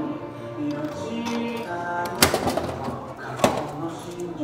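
Background music with two sharp clacks from a coin-operated gacha capsule-toy machine being worked, about two and three and a half seconds in.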